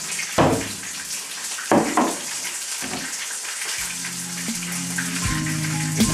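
Fish sticks frying in a pan, a steady sizzling hiss, with a few sharp kitchen knocks in the first half. Background music with a low beat comes in about two-thirds of the way through.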